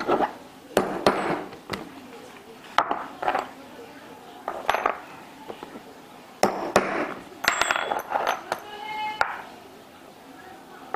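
Steel hollow leather punches clinking against the wooden worktable and each other as they are picked up and set down, mixed with sharp clicks of a punch pressed by hand through leather. About a dozen irregular clicks and clinks, with one brief metallic ring near the end.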